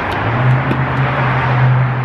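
Road traffic: a motor vehicle's engine gives a steady low drone over street noise, starting just after the start.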